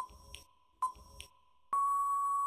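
Quiz countdown timer sound effect: two sharp ticks with a ringing ping that fades, a little under a second apart, then a long steady beep near the end as the timer reaches time out.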